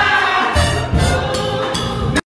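Gospel choir singing with band accompaniment, over a steady beat of low pulses about twice a second with cymbal-like strokes.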